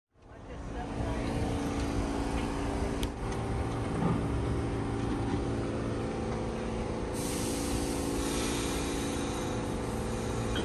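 A stopped New York City Subway Q train humming steadily at the platform, its equipment giving several steady low tones. About seven seconds in, a loud hiss of air starts suddenly and carries on.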